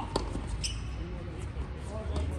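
A tennis ball struck by a racket on a hard court: one sharp pop just after the start, followed about half a second later by a short high squeak.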